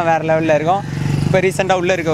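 A young man speaking into an interviewer's microphone, with a motor vehicle engine running in the background; the engine rumble comes through in a short pause in his speech about halfway through.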